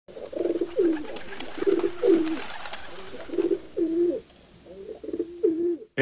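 Pigeons cooing: a run of about ten low, repeated coos, each dipping in pitch.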